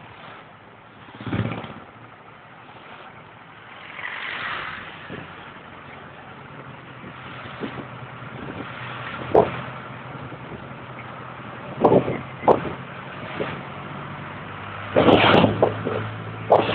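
Vehicle engine running steadily under road and wind noise, heard from inside the moving vehicle, with a few sharp knocks and rattles that cluster near the end.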